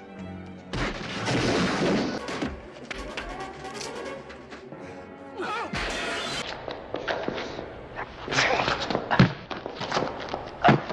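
Film fight-scene soundtrack: music mixed with punch and body-blow sound effects, with crashes in the first half and several sharp hits close together in the last two seconds.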